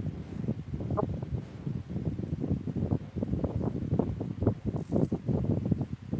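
Electric fan running close to a video-call microphone: an uneven, low rumbling noise picked up as background noise on the call.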